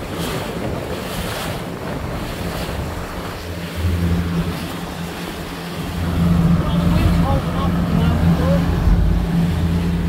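A boat's engine running at trolling speed, its low steady hum coming up about four seconds in and getting louder from about six seconds on, over the splash of choppy water against the hull and wind on the microphone.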